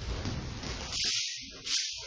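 Rustling of cotton martial-arts uniforms and movement on a training mat as a person gets up from the floor, heard as a couple of short hissy swishes over a steady background hiss and low rumble.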